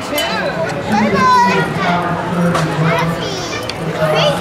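Mixed chatter of adults' and children's voices, none clear enough to make out as words, over a steady low hum.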